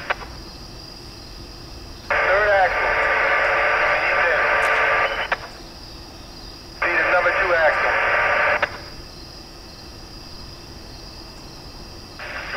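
Railroad radio transmissions over a scanner: two bursts of tinny, muffled voice, the first about two seconds in and lasting about three seconds, the second shorter near the middle, each cutting in and off abruptly with a squelch click. Low hiss in between.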